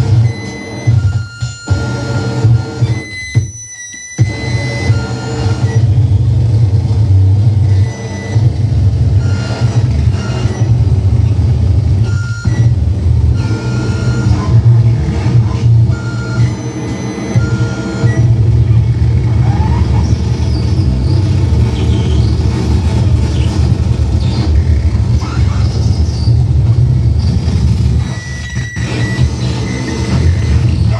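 Harsh noise improvised live on a tabletop rig of electronics and effects pedals: a dense, loud low rumble with hiss over it and high steady tones switching on and off. It cuts out suddenly for a moment several times, most deeply about three and a half seconds in.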